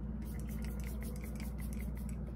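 Fingertips patting freshly sprayed toner into the skin of the face: a quick run of light taps, about seven a second.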